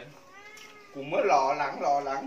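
A cat meowing: a faint rising-and-falling meow about half a second in, then a louder, longer meow.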